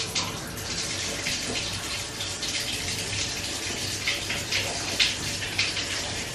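Bath tap running at full flow into a jetted bathtub, water splashing steadily into the shallow water already in the tub as it fills. The jets are not yet switched on.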